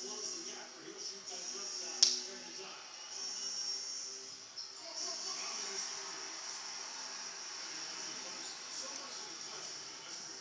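Basketball game on a television in the room: faint commentary under a steady high-pitched hiss, with one sharp click about two seconds in.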